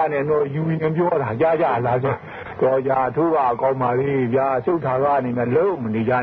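A man talking without pause, in a narrow, radio-like band.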